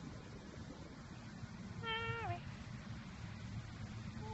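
A dog gives a single high whine of about half a second, about two seconds in. The pitch holds and then drops at the end.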